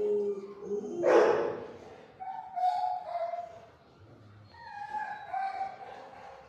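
Shelter dogs: one loud bark about a second in, followed by two drawn-out, high whines that each dip slightly in pitch.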